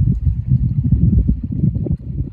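Wind buffeting the microphone: a loud, gusting low rumble with no other sound standing out.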